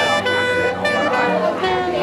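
Vietnamese funeral music: a reed wind instrument plays a melody of held notes, stepping from pitch to pitch over a steady low accompaniment.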